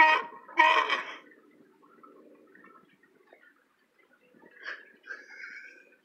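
A sea lion barking once, loud and harsh, in the first second, then quieter grumbling calls over the next few seconds, with a couple of slightly louder ones near the end. The calls are the angry warning of a disturbed sea lion that will not move off its resting spot.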